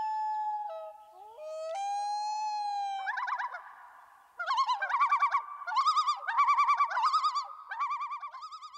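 Common loon calling. It opens with a long wailing note that slides up and holds, then a second held note. From about three seconds in it gives a fast wavering tremolo call several times over.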